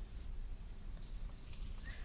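Faint room tone in an office: a steady low hum with a few faint clicks and rustles.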